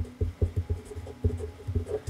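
Black marker writing letters on paper, close up: short, irregular strokes of the tip on the sheet, several a second.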